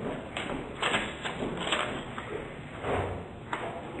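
Soft handling noises as a slip of paper is passed over and picked up: a few short rustles and light knocks spread through the pause.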